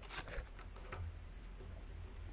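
Faint handling noises of trading cards: a few light ticks and a soft bump as cards are moved and set down on a wooden table.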